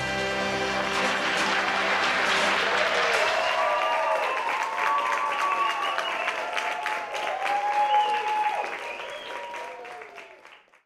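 Audience applauding and cheering, with whoops over the clapping, right after the last held chord of the music stops. The applause fades near the end.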